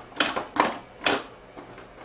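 Front lock of a Cars 2 Fan Stands die-cast display case being clicked shut: three sharp clicks about half a second apart in the first second or so.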